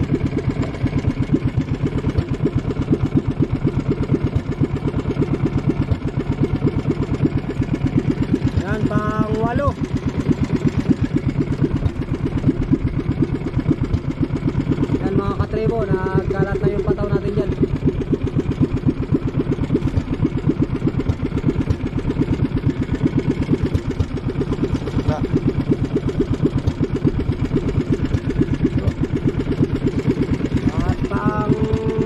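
Small engine of an outrigger fishing boat running steadily, a fast, even chug that does not change through the whole stretch.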